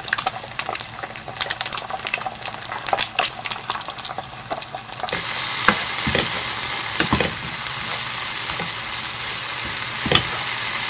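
An egg frying in hot oil in a frying pan, crackling with many small pops. About halfway through, chopped kimchi being stir-fried: a steadier, louder sizzle with the occasional scrape of the utensil stirring it around the pan.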